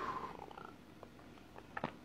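A man sniffling, the sniff trailing off in the first half-second, then faint quiet with a few small clicks near the end.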